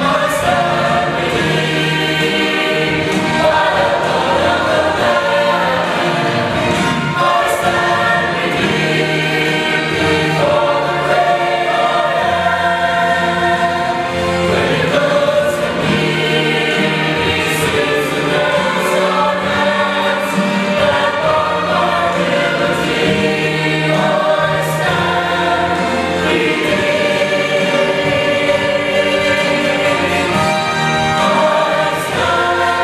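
Mixed church choir of men and women singing a gospel anthem, loud and steady with no pauses.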